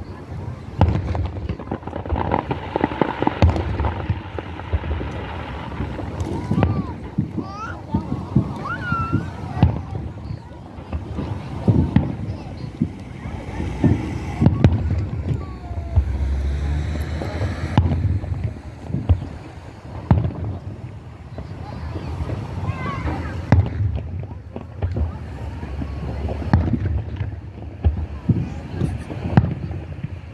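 Distant aerial fireworks shells bursting in a steady, irregular series of booms and crackles, with low rumble from wind on the microphone.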